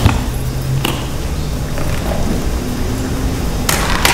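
Handling noise close to the microphone: a couple of sharp clicks early on and a short rustle near the end, over a steady low hum.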